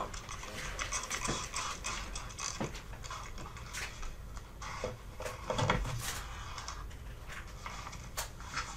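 Handling noises at a painting table: paper rustling and light taps as a sheet painted with wet black acrylic is worked and then lifted and tilted upright, with a duller knock about six seconds in.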